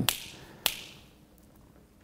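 A single sharp finger snap about two thirds of a second in, against quiet room tone.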